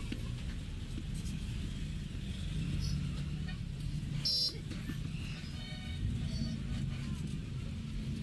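Steady low background rumble with distant voices, and a short high-pitched tone about four seconds in.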